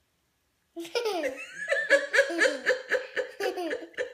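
A young child laughing: a run of quick, high-pitched laughs that starts about a second in and keeps going.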